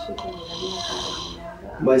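Quiet speech in the background, with a short hiss about half a second in that lasts just under a second.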